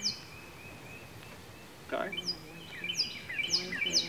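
A songbird calling: a string of short, high chirps, each falling in pitch, one at the start and then several in quick succession over the last second and a half.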